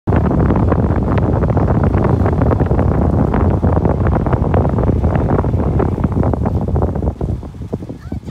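Loud wind buffeting the microphone through the open window of a moving car, a rough low rumble that eases off near the end.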